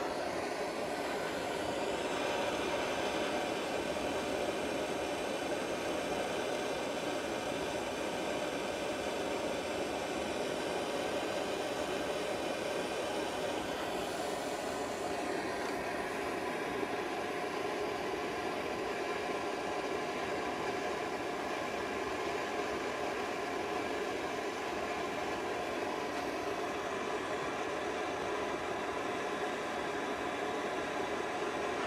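Handheld gas torch flame burning steadily on an oxygen sensor's tip, heating the sensor to operating temperature so it reads despite its failed heater circuit.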